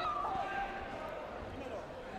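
Taekwondo sparring in a sports hall: a kick lands with a sharp slap and a short shout right at the start, the loudest moment. Distant voices and general hall noise echo through the rest.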